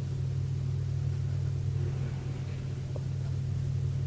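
A steady low hum, unchanging, in a pause between spoken lines.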